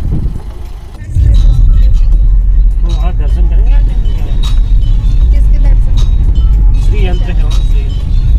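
Ford EcoSport driving along a hill road, heard from inside the cabin: a loud, steady low rumble that starts about a second in, with faint voices over it.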